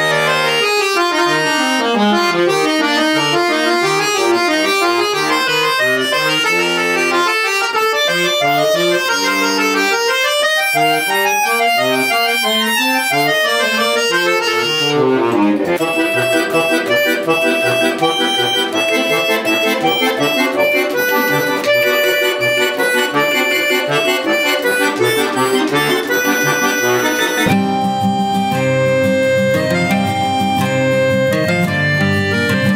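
Jupiter bayan (Russian chromatic button accordion) playing fast runs of notes up and down, then, after a cut about halfway, a passage of held chords and quick repeated notes. Near the end a different piece begins, with accordion and acoustic guitar together.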